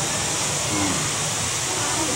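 Steady hiss of hall noise with faint voices of the congregation murmuring during a pause in the preaching.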